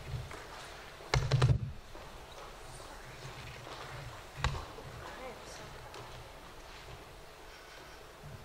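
Quiet hall ambience, broken by a short loud bump about a second in and a single sharp click about halfway through.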